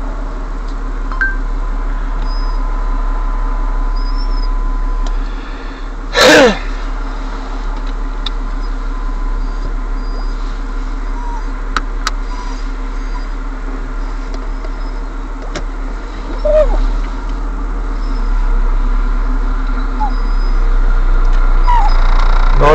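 Steady running noise of a car on the road, heard from inside the cabin. One brief loud burst cuts in about six seconds in, and a smaller one about sixteen and a half seconds in.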